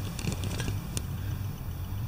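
Steady low hum inside the cabin of a Kia Sportage with a 2.0-litre diesel, the engine idling, with a few faint clicks.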